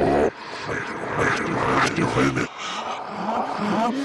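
Wordless voice sounds that rise and fall in pitch, broken by two short gaps, about a quarter second in and around two and a half seconds in.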